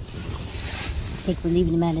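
Wood campfire burning, with wind rumbling on the microphone. A man's voice starts near the end.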